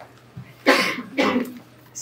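A person coughing twice in quick succession, two short hard coughs about half a second apart.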